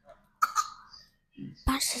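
A girl coughing once into a small clip-on microphone held against her mouth, about half a second in. Breathy speech starts close on the microphone near the end.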